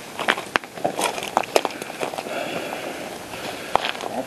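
Footsteps crunching through dry leaves and twigs: irregular crackles and snaps with light rustling.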